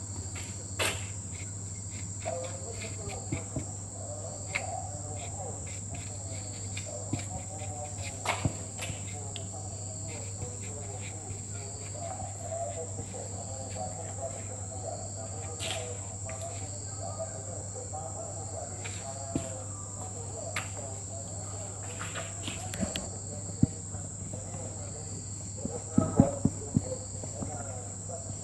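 Whiteboard marker writing on a whiteboard: light squeaking strokes and small taps, over a steady high-pitched whine and a low hum in the background.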